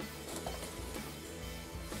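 Quiet background music, with faint handling noise as craft supplies are pulled out of a box.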